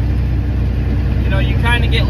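Dump truck's diesel engine running with a steady low drone, heard from inside the cab while driving. A man starts speaking about one and a half seconds in.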